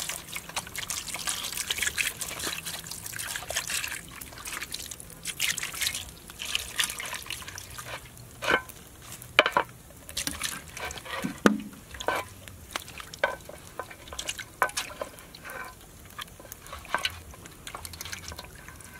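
Water pouring into a metal basin of cut fish steaks. About five seconds in it gives way to separate sloshes and splashes as hands wash and turn the fish pieces in the water.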